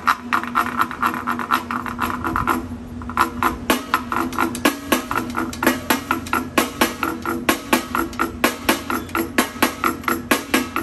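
A drumstick scraped and tapped along the ridged wooden washboard panel of a Stumpf fiddle (Teufelsgeige) makes a fast ratcheting run of clicks. After a brief break about two and a half seconds in, it settles into a steady rhythm of sharper wooden clacks, several a second.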